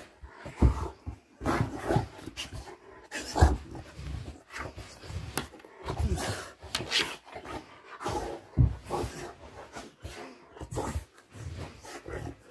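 A Rottweiler rolling and squirming on its back on a carpet, scratching its itching back: irregular bursts of its body rubbing over the carpet, mixed with the dog's own breathing.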